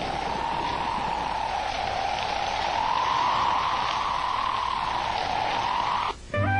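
Cartoon storm sound effect: steady rain hiss with wind whistling over it, its pitch slowly rising and falling.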